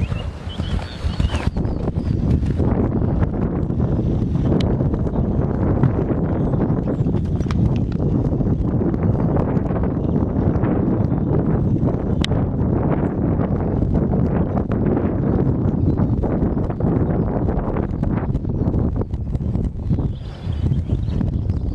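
A horse's hoofbeats at the canter, with a heavy low rumble underneath.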